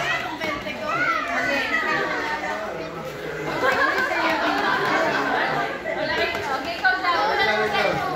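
Chatter of a group of adults and children, several voices talking over one another in a large room.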